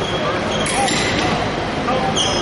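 Indistinct voices echoing in a large gymnasium, with a few thuds on the wooden floor.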